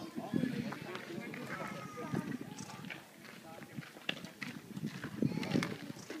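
Indistinct background talk from people nearby, with light taps and clatter of young goats' hooves on wooden tree stumps as the kids climb and jump.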